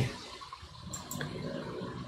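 Faint, steady rushing noise, like running water, slowly growing louder.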